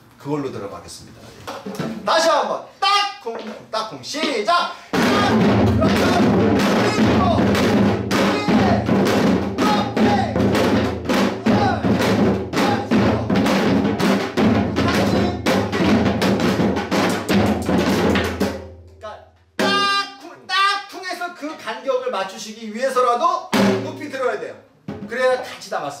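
Pungmul janggu (Korean hourglass drum) played fast in a hwimori rhythm: rapid stick strikes over deep, ringing bass-head strokes, starting about five seconds in and stopping about nineteen seconds in. A man's voice and a few single drum strokes come before and after.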